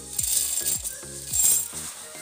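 Small roasted seeds poured into a stainless-steel mixer-grinder jar, rattling against the metal in two surges, about half a second in and again around a second and a half. Background music plays underneath.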